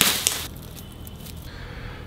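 Tinsel branches of an artificial Christmas tree rustling and crinkling as they are handled, in one brief crackly burst at the start, then only faint rustle.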